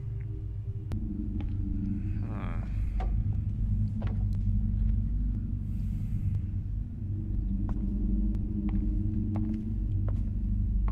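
Film soundtrack: a low, steady rumbling drone, with scattered faint clicks and a short wavering tone about two and a half seconds in.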